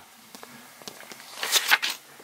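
A short rustle of a paper sheet being handled and pushed aside by hand, made of several quick scraping bursts near the end, after a quiet second with a few faint ticks.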